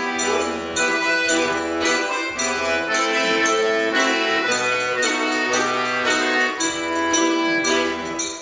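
Instrumental passage of a Finnish folk tune played on a two-row diatonic button accordion, with a mandolin strumming along to a steady beat. The accordion's bass notes sound in even, separate blocks under the melody.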